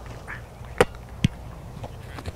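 Two short knocks about half a second apart over a low outdoor rumble: a punter handling the football as he takes the snap and steps into the punt.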